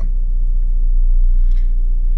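Volkswagen Passat B5's 1.8-litre four-cylinder ADR engine idling steadily, a low rumble heard from inside the cabin.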